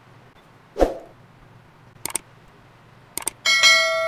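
A single knock about a second in and a few light clicks. Near the end comes a bright bell ding that rings on and slowly fades: the notification-bell sound effect of a pop-up subscribe button.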